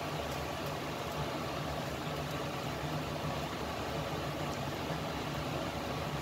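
A fan running in a kitchen: a steady low hum under an even hiss.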